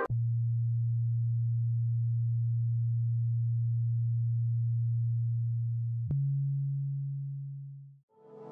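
A steady, low electronic pure tone with no other sound. About six seconds in there is a click and the tone jumps slightly higher, then fades out.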